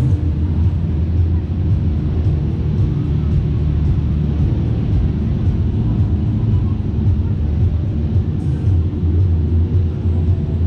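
Steady low rumble of a Superbowl fairground flat ride's machinery running while the bowl turns slowly, heard from a seat on the ride.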